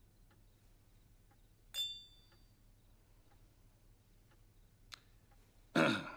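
Wine glasses clinking together in a toast: a single bright glassy ring about two seconds in that dies away within half a second. A short click follows near the end.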